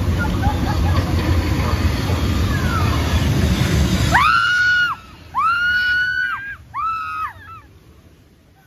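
Loud rushing water and low rumble of a river-rapids raft ride. The noise drops away about four seconds in, and a young child then makes three high, drawn-out whining calls.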